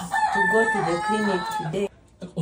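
A rooster crowing once, one long call lasting nearly two seconds that cuts off suddenly near the end, with people talking underneath.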